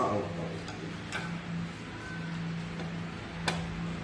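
A stirring utensil clicking against a glass saucepan of pudding mix, two sharp taps about a second in and near the end, with a few fainter ones, over a low steady hum.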